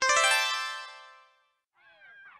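A short sound-effect sting in the audio story: a single bright, buzzy tone that starts suddenly and fades out over about a second. A faint voice-like sound follows near the end.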